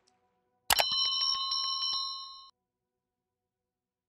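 A short electronic chime from an outro sound logo: two sharp clicks, then a bright, bell-like ringing with a quick even flutter that fades out after about two seconds.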